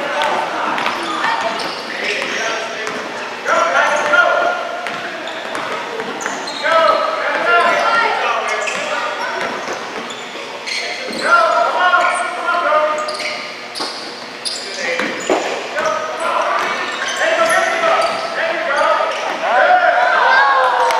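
Voices calling out in an echoing gym over a basketball being dribbled on a hardwood floor, the bounces coming as short knocks among the voices.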